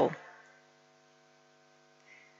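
The last syllable of a woman's speech dies away at the start. After that there is only a faint, steady electrical mains hum of several even tones.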